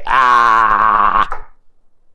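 A man's long drawn-out vocal groan at a steady pitch, lasting about a second and a half, then stopping abruptly.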